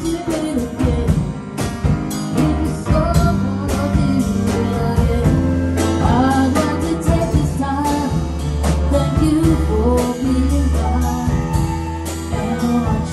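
Live jazz band playing an instrumental passage: flute carrying a wavering melody over grand piano, bass and drum kit, with frequent cymbal and drum strokes.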